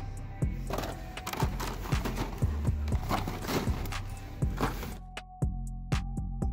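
Background music with a steady beat, with a noisy hiss-like layer over it from about a second in that cuts off suddenly about five seconds in.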